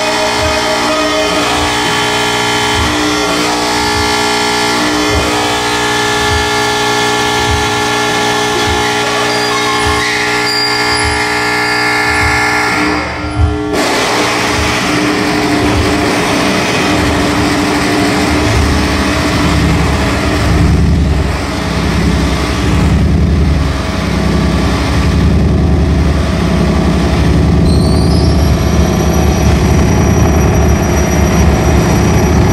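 Loud electronic sound design: a drone of many layered steady tones over an evenly repeating low pulse that cuts off abruptly about halfway through, giving way to a dense, pulsing low rumble. Near the end a high tone glides up and holds.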